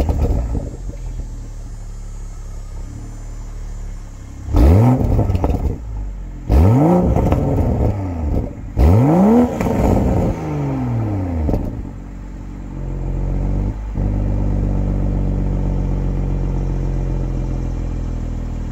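Exhaust of a 2022 Toyota Supra GR 3.0's turbocharged inline-six, parked and idling. It is revved three times, about two seconds apart, each a quick rise and fall in pitch, then settles back to a steady idle.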